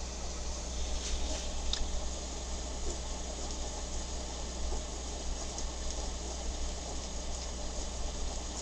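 Steel Hunt school dip-pen nib scratching lightly across sketchbook paper in short strokes while lettering is written, with a few faint ticks, over a steady low hum.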